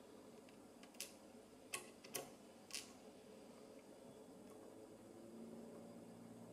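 Small metal lock key pins being handled: four light clicks in the first half, with near silence around them.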